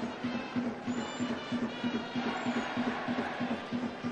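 Music playing in a baseball stadium over crowd noise, with a low note repeating at about three beats a second.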